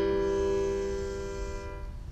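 A single piano-sound note played from an Eigenharp Pico controller, held with its harmonics ringing steadily and slowly fading, dying away near the end.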